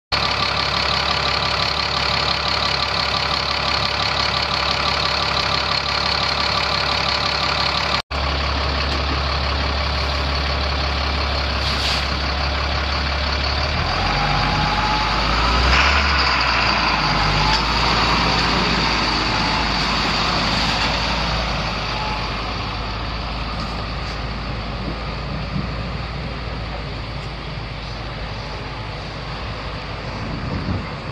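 Caterpillar 3126 inline-six diesel engine of a Sterling Acterra truck running at idle. It drops out for an instant about eight seconds in, then runs on with a rougher, shifting note and a brief change in pitch about halfway through.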